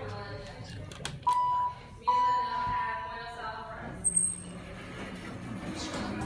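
Elevator signal tone sounding twice at one pitch: a short beep, then a longer tone that fades away like a chime. A click comes just before them.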